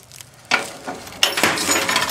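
Steel tray of a truck tow dolly swivelling side to side on its pivot, metal clinking and clanking, with a louder clank a little past a second in.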